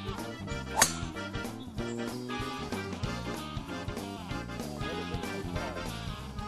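Background music plays throughout; about a second in, a single sharp crack of a driver striking a golf ball off the tee.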